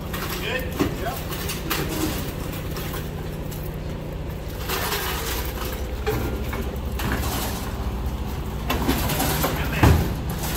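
A steady low engine rumble, typical of an idling truck, under intermittent knocks and clatter as stainless-steel counter units are handled off the trailer. The loudest thump comes near the end.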